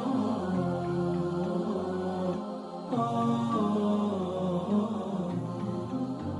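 Chant-like vocal music with long, sliding sung notes and no beat. There is a short lull before a new phrase begins about halfway through.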